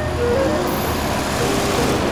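An old sedan driving past, its engine and tyre noise swelling as it comes close near the end, over background music.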